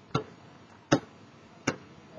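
Basketball being dribbled on concrete: three sharp, evenly spaced bounces, a little under a second apart.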